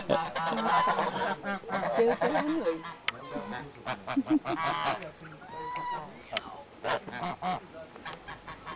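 A small flock of white domestic geese honking and gabbling close by, in many short repeated calls that overlap one another.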